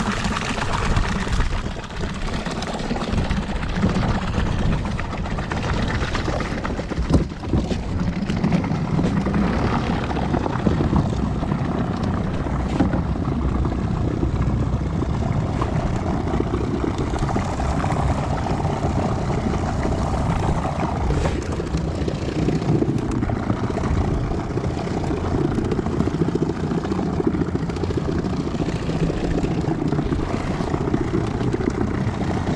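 A boat's motor running steadily as the gigging boat moves through shallow water, with one short knock about seven seconds in.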